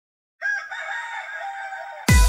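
A rooster crowing: one long crow starting about half a second in, the opening of an electronic dance track.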